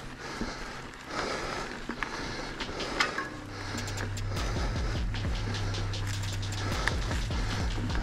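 Norco Fluid FS A2 full-suspension mountain bike rolling along a dirt singletrack, with tyre noise and rattling clicks over the ground. About halfway through, a steady low hum joins in under the clicking.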